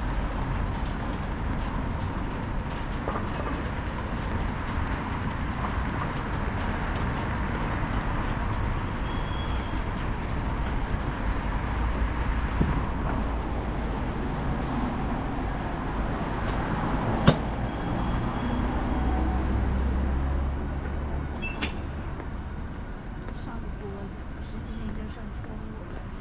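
City street traffic noise: a steady rumble of vehicles on the adjacent road, swelling as one passes about two-thirds of the way through. There is a single sharp click about seventeen seconds in.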